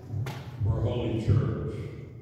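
A man's voice intoning a liturgical prayer, with a lot of reverberation.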